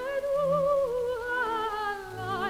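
Soprano voice singing a soft legato phrase with vibrato that drifts slowly downward, over quiet sustained orchestral accompaniment, from a 1942 recording.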